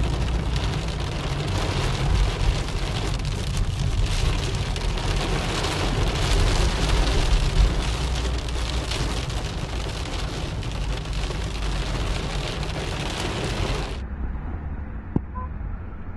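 Heavy rain drumming on a car's roof and windshield, heard from inside the car, over a low rumble. The rain noise cuts off suddenly about 14 seconds in, leaving a quieter low rumble.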